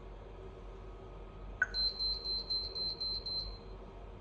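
A tap on the touchscreen, then the HOMSECUR HDK SIP(B19) video intercom's buzzer beeps seven times in quick succession, high-pitched. The beeps confirm that all fingerprint users have been deleted.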